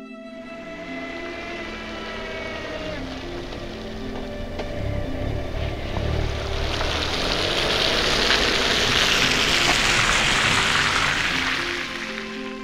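Slow background music, then the rushing road and wind noise of a car driving on a snowy road. The rush swells up, is loudest in the second half with a low rumble just before it, and stops near the end.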